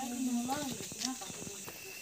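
A voice is heard briefly in the first second, over a steady high hiss with a thin continuous tone and a few light clicks.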